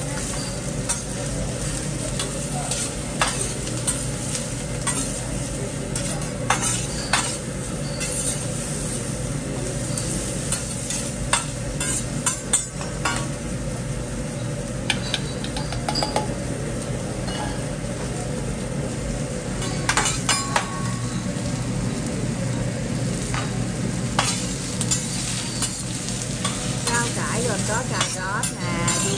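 Sliced zucchini and onion sizzling on a steel teppanyaki griddle while a chef stir-fries them with metal spatulas. Frequent sharp, irregular clicks and scrapes of the steel spatulas on the flat-top sound over the steady frying.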